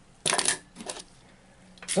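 Hard plastic toys clattering and knocking on a wooden tabletop as a small figure is picked up: a sharp burst of clicks about a quarter second in, then a few lighter clicks near one second.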